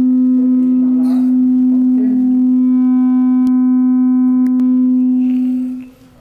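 A loud, steady held tone with overtones, unchanging in pitch, that cuts off shortly before the end, with a few words of speech over it early on.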